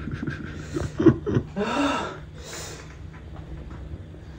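A man breathing hard through the mouth, with about three loud, rushing exhales and a short grunt, from the burn of a super-hot chili chip he has just eaten.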